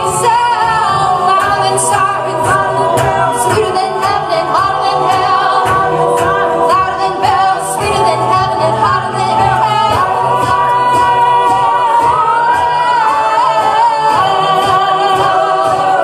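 A cappella group singing: a woman's lead voice over the group's sung harmonies, with a beatboxed drum beat keeping time.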